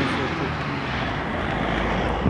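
Steady rushing of wind across the microphone of a moving bicycle, with a low rumble underneath.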